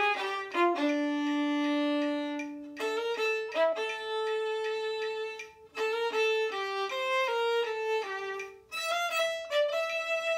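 Solo violin bowing a lively melody, one note at a time, with a long low note near the start and brief breaks about five and a half and eight and a half seconds in.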